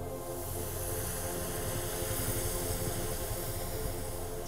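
Snowmaking guns running with a steady hiss, over background music with held tones.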